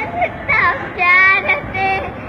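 A young girl singing a Sindhi song in short phrases, holding some notes.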